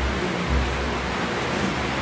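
A pause in speech: steady, even hiss with a low hum underneath.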